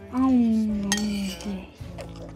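A drawn-out vocal sound from a person, about a second long and gliding slightly down, with a brief second sound after it; a single sharp clink of a spoon against a bowl about a second in, over steady background music.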